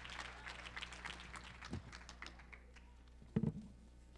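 Audience applause fading away over the first two to three seconds, then a single short low thump about three and a half seconds in.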